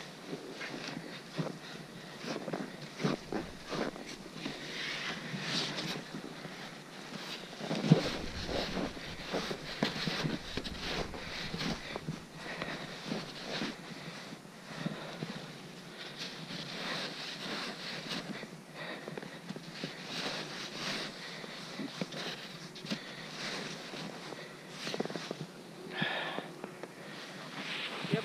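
Scraping and crunching of skis and boots in snow, with scattered knocks and clatter of the ski gear as snow is knocked off a ski and the boots are worked into the bindings; a heavier thump about eight seconds in.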